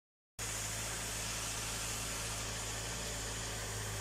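Car engine idling steadily from about half a second in: a low, even hum with a hiss over it.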